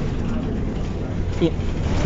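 Steady low engine and road rumble of a city bus heard from inside the passenger cabin, with a voice saying "yeah" near the end.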